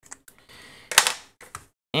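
Felt-tip marker drawing on paper, a short scratchy stroke, then one sharp click about a second in and a fainter tap after it.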